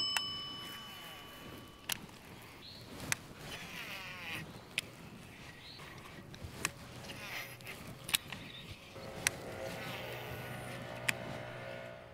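A bell-like ding rings out and fades over the first two seconds. Then comes a faint outdoor hush with scattered sharp clicks. A distant motorboat engine hum rises in the last few seconds.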